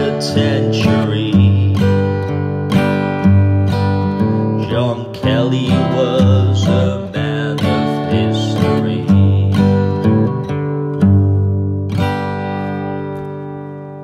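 Acoustic guitar strumming the closing bars of a song, ending on a final chord about twelve seconds in that rings and fades away.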